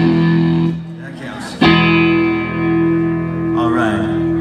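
Electric guitar through an amplifier: a chord rings out and dies away within the first second, then a second chord is struck suddenly about a second and a half in and left to ring steadily.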